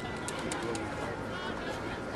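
Faint, distant voices of players and spectators across an open playing field, with a single low call, like a dove's coo, about half a second in.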